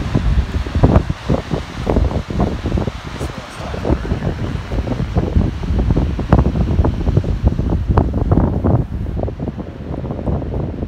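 Strong wind buffeting the microphone: a loud, gusty low rumble with irregular blasts, the strongest about a second in and around six and eight seconds in.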